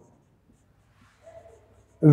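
Marker pen writing on a whiteboard, faint.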